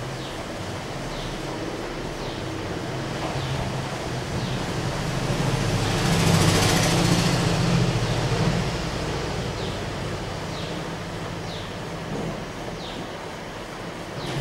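A passing vehicle: its noise, with a low hum, swells to a peak about halfway through and then fades away. Faint short high chirps repeat about once a second throughout.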